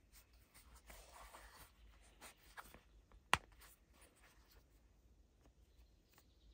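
Leather knife sheath being handled: soft rubbing of the leather, a few small clicks, then one sharp click a little over three seconds in as the retaining strap's press stud snaps.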